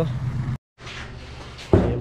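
Motorcycle tricycle engine running for about half a second, then cut off abruptly. A quieter low hum follows, with one sharp knock near the end.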